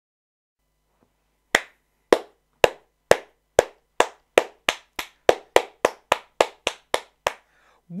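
One person clapping by hand, starting about a second and a half in with slow, spaced claps that steadily speed up, about seventeen sharp claps in all, an excited reaction building into quick applause.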